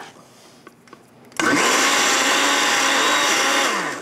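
Glass-jar countertop blender switched on about a second and a half in, its motor running steadily as it mixes liquid crepe batter. Near the end it is switched off and the motor winds down, falling in pitch.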